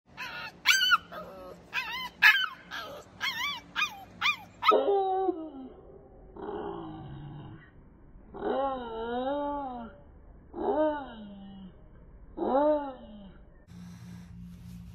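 A young bully-breed puppy yipping, a quick run of short high yips over the first few seconds, then a handful of longer, drawn-out howling cries that rise and fall in pitch.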